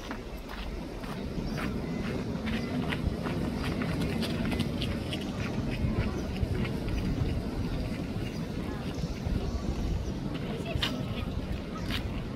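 Indistinct voices of people talking in the background over a steady low rumble, with scattered short clicks throughout.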